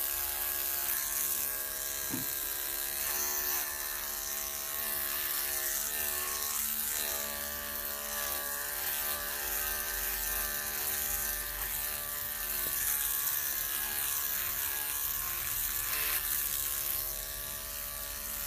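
Electric dog-grooming clippers with a #40 blade running steadily, their hum wavering slightly in pitch as the blade is pushed through a thick felted mat of hair. The mat is very thick, so the clippers break through it only slowly.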